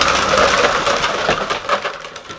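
Armful of empty cardboard toilet paper rolls dumped from above, raining down over a person and onto the floor in a dense, hollow clatter that thins out near the end.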